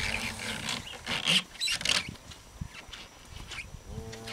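Blue plastic calf sled pushed and scraped over frozen ground by a cow's muzzle. It makes a pitched, groaning drone at first, then two loud rasping scrapes a little over a second in and near the two-second mark.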